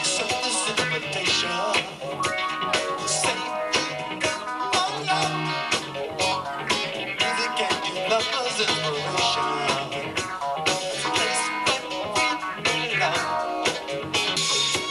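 A rock band playing live, with electric guitar to the fore.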